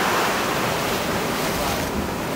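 Steady rush of ocean surf, waves breaking and washing, with no distinct events.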